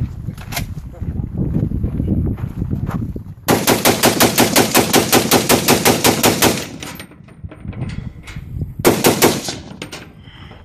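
An FN SCAR rifle, fresh out of a mud puddle, firing a fast string of about twenty shots at roughly seven a second for about three seconds. A few more quick shots follow near the end. The rifle keeps cycling without choking.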